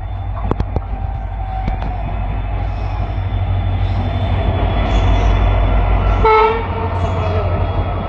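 Diesel locomotive and its passenger coaches rolling past close by, a heavy rumble that grows louder as the train comes alongside. A brief horn note sounds a little after six seconds in.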